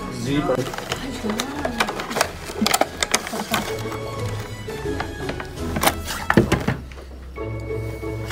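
A cardboard toy box being opened and its black plastic display tray handled: scattered clicks, taps and rustles, loudest about three and a half and six seconds in, over background music.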